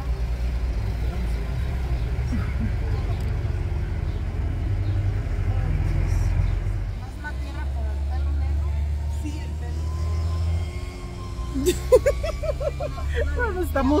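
Low, steady rumble of a car's engine heard from inside the cabin, with voices and a sharp click near the end.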